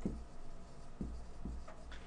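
A felt-tip marker writing on a whiteboard: a few faint strokes and taps.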